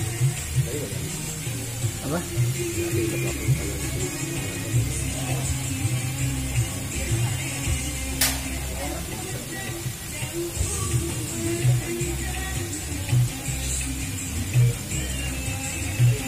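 Music with a strong bass beat and voices in it, played at a steady level.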